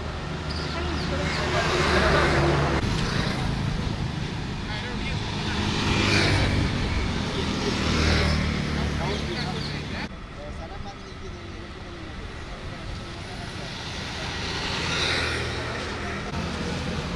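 Road traffic: vehicles passing one after another, each swelling up and fading away, over the indistinct talk of people standing by the road.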